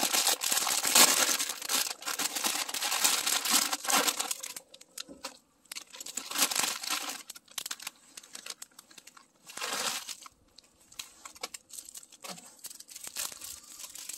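Plastic instant-ramen packet being torn open and crinkled, with dense rustling for the first four seconds or so, then two shorter bouts of crinkling later on.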